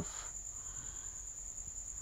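A steady, high-pitched trill runs on under faint background hiss and hum, in a pause between words.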